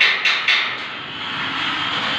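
Rapid hammer strikes on metal, about four a second, stopping under a second in, followed by a steady mechanical drone.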